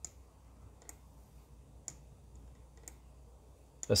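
Four light clicks about a second apart from computer controls as photos are stepped through in an image viewer, over a faint low hum.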